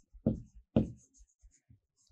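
Felt-tip marker writing on a whiteboard, with faint high squeaks of the tip, and two short, louder low sounds about a third of a second and three-quarters of a second in.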